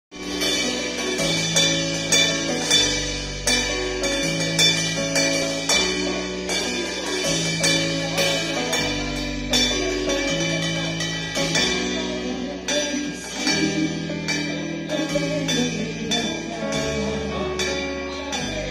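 A small band plays an instrumental passage: a keyboard holds a bass line and chords that change every second or so, while congas are struck in a steady rhythm.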